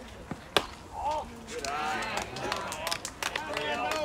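One sharp smack of the baseball at home plate about half a second in. After it, several voices call out and shout over one another from the players and spectators.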